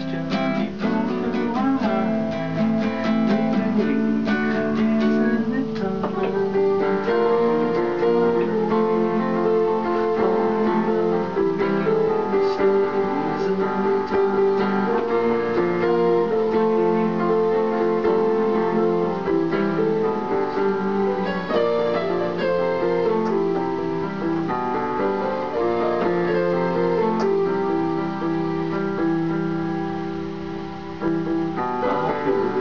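Nylon-string classical guitar strummed for the first several seconds, then an electronic keyboard played with both hands in a piano voice: an instrumental passage of held chords and melody notes, no singing.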